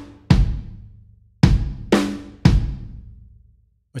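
Spitfire LABS Drums virtual instrument played from a MIDI keyboard: four single drum hits, each followed by a long reverb tail dying away, with its reverb turned up.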